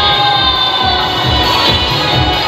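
Live music from the stage, played loud over loudspeakers in a large tent, with held notes and a regular low beat, over the noise of a big crowd.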